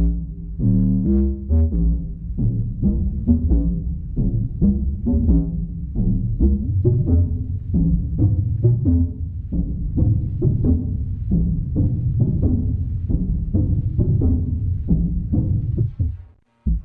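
Karplus-Strong plucked-string tones from an Intellijel Rainmaker comb resonator in a Eurorack modular synth: a sequence of deep, bass-heavy pitched plucks, about three notes a second. The plucks are excited by noise bursts, and an envelope shapes how long each note rings out.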